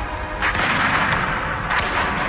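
Gunfire from a volley of muskets, starting with a sharp crack about half a second in, with dense shooting after it and a few more sharp shots near the end, over film-score music.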